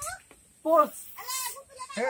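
Young men's voices calling out in two short, drawn-out shouts, about half a second and a second and a half in.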